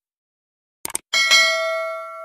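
Two quick mouse-style clicks a little under a second in, then a bell chime sound effect that rings on and slowly fades.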